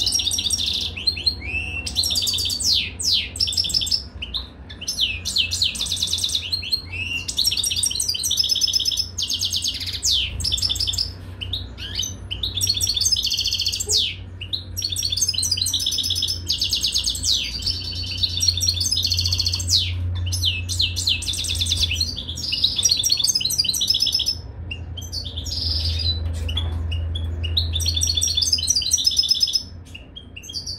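European goldfinch singing a fast, continuous twittering song of rapid trills and quick down-sweeping chirps, in phrases broken by brief pauses.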